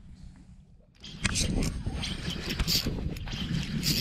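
Wind and water noise on a small flats skiff: a steady rush with crackles starting about a second in, after a brief near-quiet moment.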